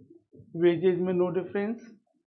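A man's voice murmuring at a low, fairly steady pitch without clear words, starting about half a second in and running in short syllable-like pieces.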